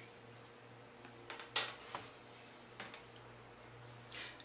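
Faint taps and clicks of a makeup brush picking up black eyeshadow from a palette, the sharpest about a second and a half in, over a low steady hum.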